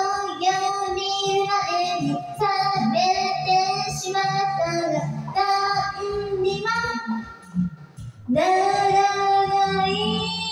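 A woman singing a Japanese pop song into a karaoke microphone over the karaoke backing track, in held, wavering notes. She breaks off briefly about seven and a half seconds in, then comes back in on a long held note.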